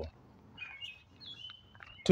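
Faint bird chirps: a few short, high calls, then a brief held whistled note near the end.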